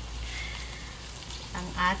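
Sautéed canned sardines sizzling in a hot stainless honeycomb wok just after water has been poured in. The sizzle is steady and even.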